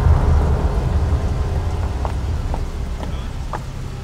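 Wind buffeting an outdoor microphone: a loud, uneven low rumble under a steady hiss, easing off slightly, with a few faint ticks.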